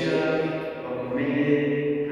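A man's voice chanting a liturgical text on long held notes.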